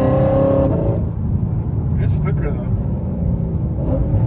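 Lexus RC F's V8 engine and road rumble heard from inside the cabin while driving. A steady engine tone carries through the first second and then drops away, leaving a low drone.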